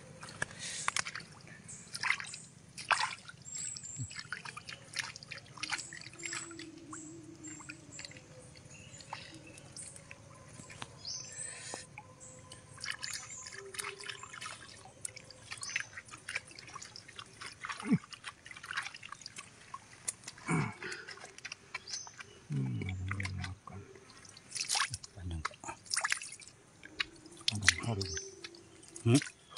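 Hands digging and squeezing into waterlogged mangrove mud after a sea worm's burrow: irregular wet squelches, drips and small splashes.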